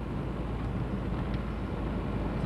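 Inside a moving car: the steady low rumble of engine and tyres on the road.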